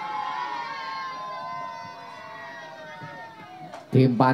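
Several distant voices overlap, and one holds a long high wavering call that slowly falls in pitch before fading.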